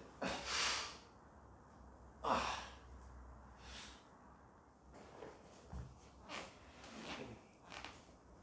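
A man's heavy, noisy breaths and exhalations, the loudest about half a second in and just after two seconds, with fainter ones later, as he breathes through a painful deep-tissue massage of the hip.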